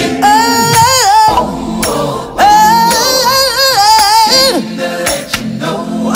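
Gospel song: a woman's lead vocal sings two long phrases with wavering vibrato and bending runs, with short breaks between them.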